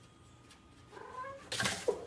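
A cat yowling. The cry starts about a second in and rises in pitch, then turns into a louder, harsher burst near the end.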